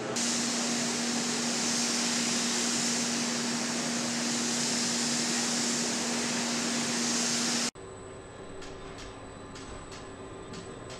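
Steady, loud hiss of air with a low steady hum from a production machine, which cuts off suddenly late on. It leaves quieter factory room tone with faint, regular ticks about twice a second.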